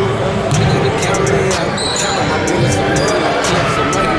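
Basketball game on a hardwood gym court: the ball bouncing, short high sneaker squeaks about two seconds in, and players' voices echoing in the hall.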